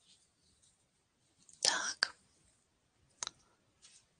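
A brief breathy whisper close to a headset microphone about halfway through, followed at once by a sharp click, and another click about a second later.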